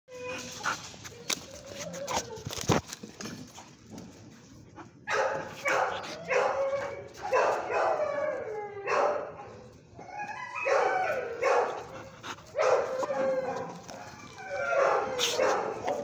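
A dog vocalizing in a run of short, falling-pitched cries, starting about five seconds in. Before that there are a few sharp clicks and scuffs.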